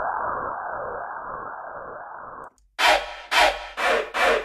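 Xfer Serum's 'City Lights Flutter' FX preset: a muffled, swirling noise sound that fades slowly and cuts off about two and a half seconds in. Near the end a different Serum FX preset starts, playing bright, short stabs about two a second.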